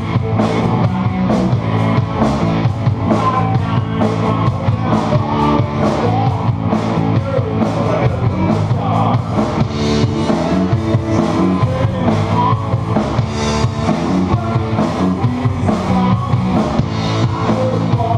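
Live rock band playing: electric guitars over a drum kit keeping a steady beat, with no singing.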